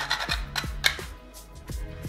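Background chillhop music with a steady low beat, over a few short, irregular rasping strokes of whole nutmeg being grated on a small handheld grater.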